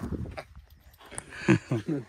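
A man laughing near the end, a short run of quick "ha-ha" bursts.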